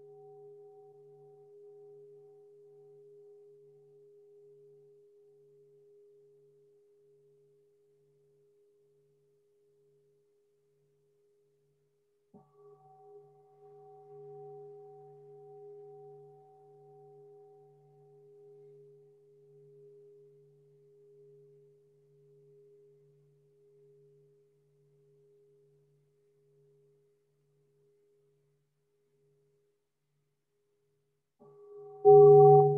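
A singing bowl ringing out from a strike just before, its faint hum slowly fading with a slow wavering beat. It is struck again about twelve seconds in and rings out once more, fading gradually.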